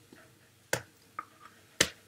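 A few sharp clicks close to the microphone: two loud ones about a second apart, with a fainter one between them.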